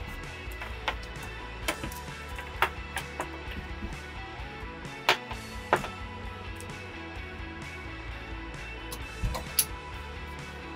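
Soft background music, over which come scattered sharp clicks and knocks from the bunk net's clips and carabiners being unhooked and stowed.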